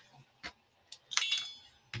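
A few light clicks, then a short clink with a faint ring about a second in, as a capped pen is picked up off a cutting mat and its cap pulled off.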